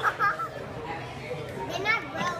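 Short high-pitched voices, children's among them, at the start and again near the end, over a steady murmur of background chatter.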